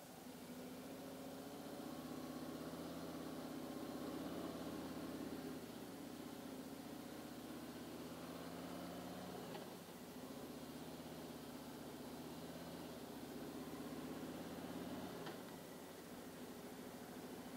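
Harley-Davidson Street Glide's V-twin engine running as the bike pulls away from a stop and rides on through town traffic, its note changing in steps as it is shifted. There is a brief dip about ten seconds in, and it eases off near the end.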